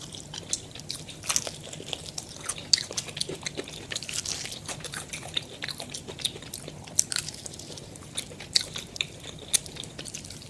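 Close-up crunching and chewing of crispy KFC fried chicken breading, a dense run of sharp crackles with a few louder snaps. Played back at double speed, so the crunches come thick and fast.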